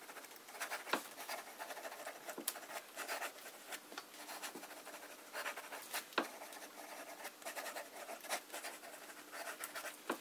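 Montblanc 344 fountain pen's fine nib moving quickly across paper in cursive writing, a faint, uneven rasp. A few sharp ticks stand out along the way.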